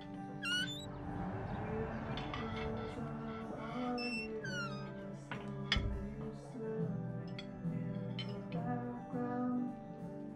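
Background music of sustained notes, with a few quick sliding notes near the start and around four seconds in. A single short thump sounds just before six seconds.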